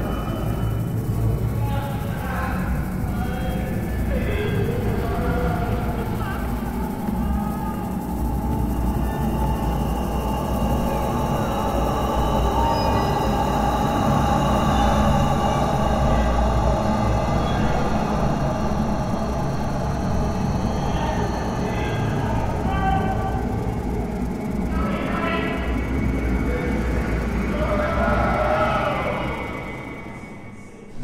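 Dark, eerie background music: a sustained low drone that runs steadily and falls away at the very end.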